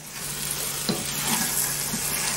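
Wet fried rice sizzling in a wok as it is stirred with a wooden spatula: a steady frying hiss, with a light tap about a second in.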